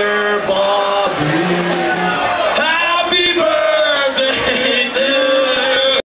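Several voices singing together without instruments, with held notes sliding between pitches, over a crowd in a club.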